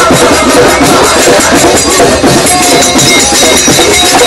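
Live kirtan music: group chanting over drums and percussion, loud and close.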